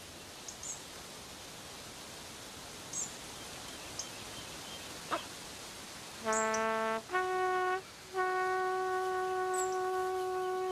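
Quiet forest ambience with a few faint high chirps and a click. From about six seconds in, a brass horn in the film's soundtrack plays held notes: a short low note, a short higher one, then a long sustained note.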